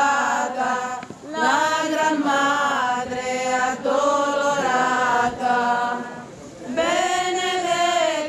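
A group of voices singing a slow religious processional chant in unison, in long held notes. There are short breaks between phrases about a second in and again near six seconds, each new phrase sliding up into its first note.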